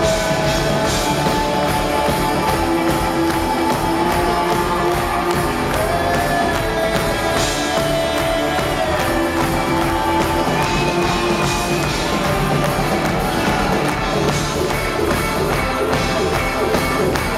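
Live band playing a pop-rock song with electric guitars, bass guitar, drums and keyboards, loud and steady, with long held sung notes over it.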